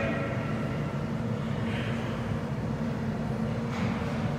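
Steady low rumble of subway station background noise, with a soft brief hiss about two seconds in and another near the end.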